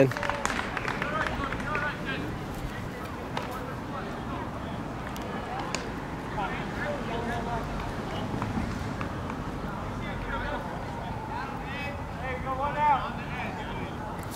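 Distant voices of players and spectators calling and talking across an open ball field, over a steady outdoor background. One voice is louder near the end.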